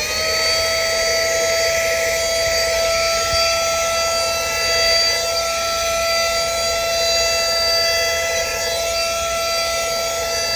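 JOMO Living handheld cordless vacuum cleaner running at a steady speed: a high motor whine over the hiss of air drawn in through its nozzle as it works over a car's floor mat.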